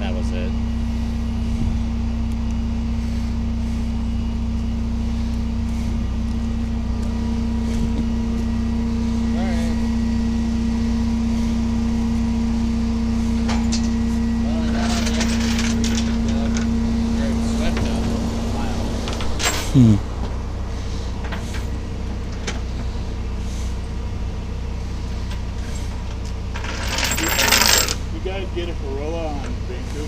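A truck engine idling steadily with a low hum. A humming tone over it stops about two-thirds of the way through, and a brief loud hiss comes near the end.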